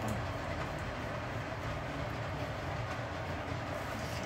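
A steady low rumble with an even hiss over it, unchanging throughout, like constant machine or ventilation noise in the room.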